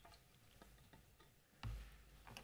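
Faint clicks and taps of a computer keyboard and mouse being worked at a lectern, picked up by its microphone, with one louder low thump near the end.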